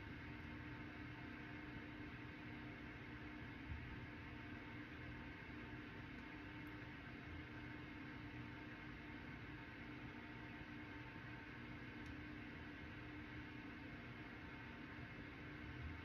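Faint room tone: a steady hiss with a low electrical-sounding hum, and one soft bump about four seconds in.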